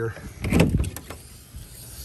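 Paddle latch clicking and a metal compartment door on a service truck's utility body being opened, with a cluster of clicks and clatter about half a second in.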